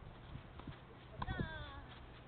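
Tennis rally on a clay court: a few hollow pocks of the ball off racket strings and the court, the sharpest about a second in. A short, wavering vocal sound follows it.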